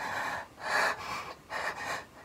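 Heavy human breathing: a few sharp breaths in and out in quick succession.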